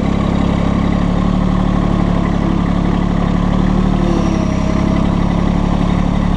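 Massey Ferguson GC1725M sub-compact tractor's three-cylinder diesel engine running steadily as the tractor is driven, heard from the operator's seat.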